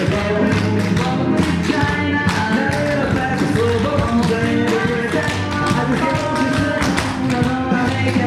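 A group of tap dancers' tap shoes striking a wooden floor in quick, rhythmic taps, over loud recorded music with no singing.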